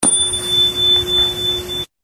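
Subscribe end-card sound effect: it starts suddenly with a steady high tone and a lower hum over a hissy, rumbling bed, then cuts off abruptly just before the end.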